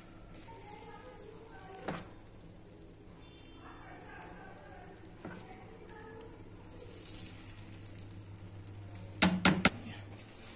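Appe batter sizzling faintly in a hot oiled appe pan over a gas burner, with a steady low hum underneath. A cluster of sharp clicks and knocks comes near the end.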